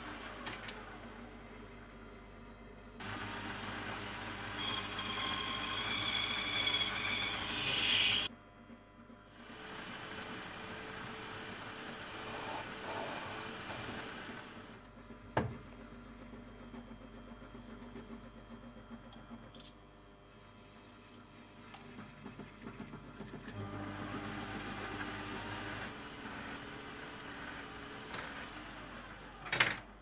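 Mini lathe running with a tool cutting into a brass bush, the cut giving a high squeal for several seconds before it stops abruptly. A sharp click follows mid-way, the spindle is stopped for a while, then the lathe runs again with a few high squeaks near the end.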